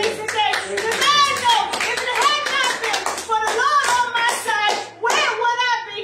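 Repeated hand claps in a quick run, mixed with a woman's loud, excited voice at the microphone.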